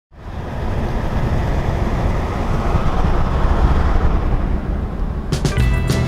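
Steady rushing road and wind noise with a heavy low rumble, as inside a moving car. About five seconds in, music with plucked notes starts over it.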